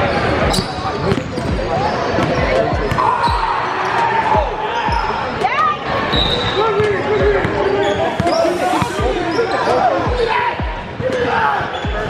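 A basketball bouncing on a hardwood gym floor during play, with a steady run of thumps about one to two a second, amid the chatter of onlookers' voices.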